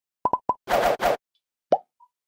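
Channel logo sting sound effect: three quick pops, then two short hissing noise bursts, and a final pop that drops in pitch near the end.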